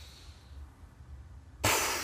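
Quiet room hum while a deep breath is held, then a sudden, loud exhale blown out through pursed lips close to the microphone, about one and a half seconds in, fading over half a second.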